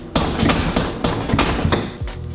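A metal push bar on a steel exit door being pushed and worked, giving a quick series of clunks and thuds as the door knocks in its frame.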